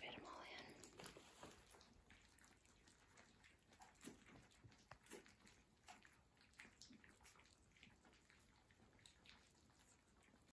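Faint chewing and lapping of a litter of puppies eating soft food from a shared tray: many small, irregular clicks and smacks.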